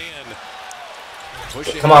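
Low-level sound from a basketball game broadcast, with a ball bouncing on the court. A man's voice comes in loudly near the end.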